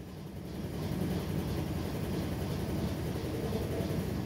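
A steady low rumble that grows over the first second and then holds level.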